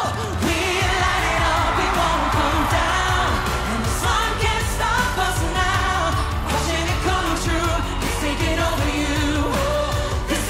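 A woman and a man singing a pop duet live over a full band backing track.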